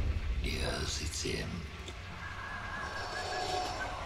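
A quiet stretch of movie-trailer soundtrack: a breathy, whispered voice in the first couple of seconds, then a held high tone, over a steady low hum.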